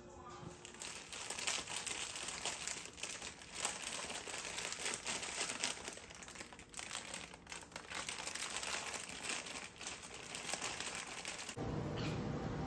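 Plastic food packaging crinkling and crackling irregularly as it is handled at close range, stopping abruptly just before the end.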